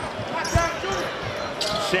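Basketball dribbled on a hardwood court, with a low bounce about half a second in, over arena crowd hubbub.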